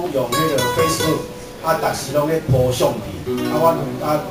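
Acoustic guitar played as accompaniment under a man's voice through a microphone, reciting a poem in Taiwanese.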